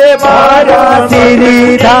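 A man singing a devotional song, with sung lines bending over a steady, held musical accompaniment.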